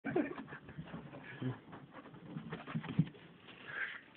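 Two dogs playing, with several short, low grunting sounds and scuffling.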